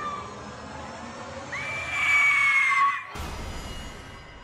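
A long, high scream, held for about a second and a half and trailing off at the end. About three seconds in it gives way to a sudden deep hit with a rush of noise, a trailer sound-effect impact.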